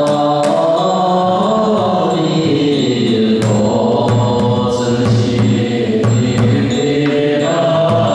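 Buddhist assembly chanting a liturgy together, accompanied by a large Chinese temple drum struck with wooden sticks in a steady beat of about two strokes a second.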